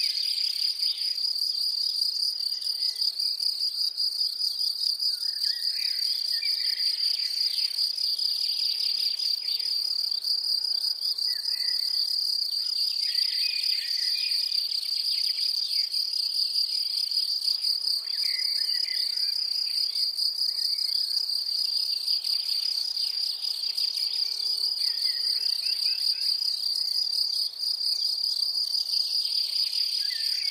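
A steady, high-pitched insect trill like a chorus of crickets, with short, faint chirps every few seconds.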